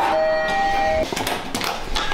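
Lift arrival chime: two steady electronic tones, a higher then a lower, held for about a second and cutting off abruptly, followed by soft scuffing and knocks.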